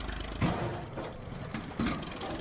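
Ford 550 backhoe loader's engine running under load as the machine drives up loading ramps onto a trailer, with two short louder moments, about half a second in and near the end.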